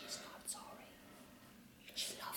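A faint whispered voice, breathy and without clear pitch, fading to near silence about a second in.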